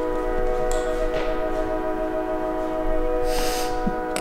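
Train horn sounding one long, steady multi-note chord.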